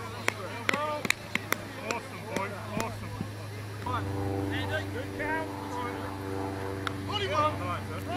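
Indistinct shouts and calls of players on an American football field, with sharp clicks during the first few seconds. From about four seconds in, a steady engine hum joins.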